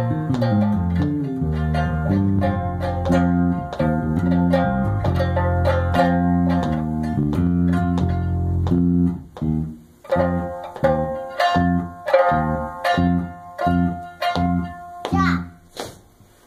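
Electric bass guitar playing: a slide in pitch at the start, then a run of held low notes, changing after about nine seconds to short, separate stabbed notes about two a second, ending in a brighter strum.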